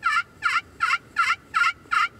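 A steady series of hen turkey yelps from a turkey call, about three notes a second, each note breaking downward in pitch, about six notes in all.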